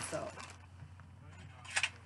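A plastic poly mailer bag being handled, rustling faintly, with a short crinkle near the end.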